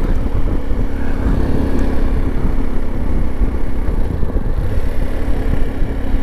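Italika V200 motorcycle running at a steady cruising speed. A steady engine hum sits under a heavy low rumble of wind on the handlebar-mounted camera's microphone.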